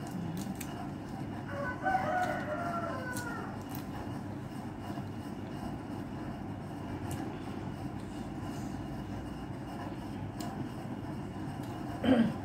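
A rooster crowing once, about two seconds in, a call of under two seconds that falls away at the end. A steady low background noise runs under it.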